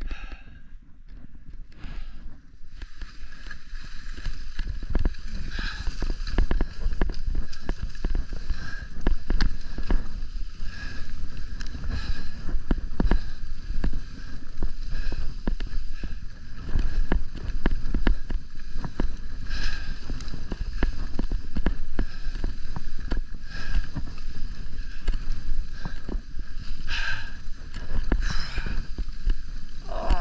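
Skis running over packed snow on a downhill run, a continuous scraping hiss with louder scrapes every few seconds, over heavy wind rumble on the microphone. It builds over the first few seconds as speed picks up.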